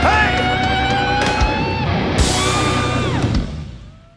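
Live rock band with a male lead singer playing loudly, with a long held note in the first half. The music fades out over the last second.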